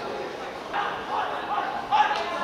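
Several short, sharp shouted calls from voices on the pitch over a steady background haze, with a sharp thump right at the end.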